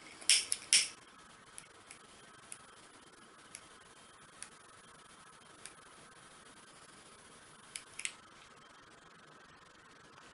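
A hand-held lighter struck twice in quick succession within the first second, each strike short and sharp. Faint scattered clicks of handling follow, with two more short clicks or strikes close together near the end.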